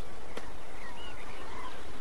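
Steady outdoor background hiss with a few faint bird chirps around the middle, and a single soft click near the start.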